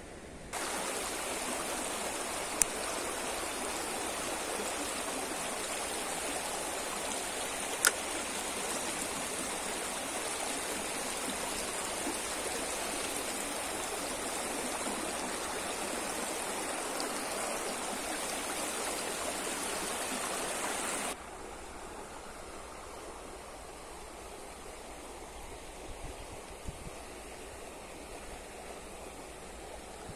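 Shallow river running over a stony bed: a steady rush of water, with two sharp clicks in the first several seconds. About two-thirds of the way through it drops suddenly to a quieter rush.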